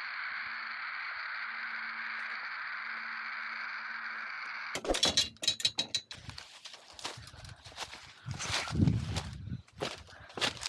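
Radio-telemetry receiver giving a steady hiss of static with no beacon beeps: the collared mountain lion's signal is not being picked up. About five seconds in the static cuts off and gives way to a run of clattering knocks and thumps from gear being handled in a pickup truck bed.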